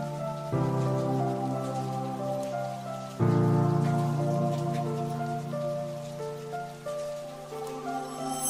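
Calm background music of sustained chords, changing about half a second in and again just after three seconds, over a soft, steady rain-like hiss.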